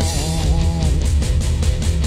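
An outlaw country band's song in an instrumental passage: electric guitar playing a lead line with bent notes in the first second, over bass and a steady drum beat.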